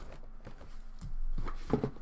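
Handling of a cardboard shipping box: rustling and light knocks of the flaps and contents that start about a second in, as hands reach into the box.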